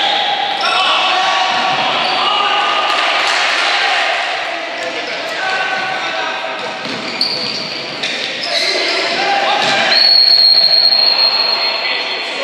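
Indoor futsal play in an echoing sports hall: players' shouts, shoes squeaking on the court floor and ball thuds. About ten seconds in a referee's whistle blows one long blast, calling a foul as a player goes down.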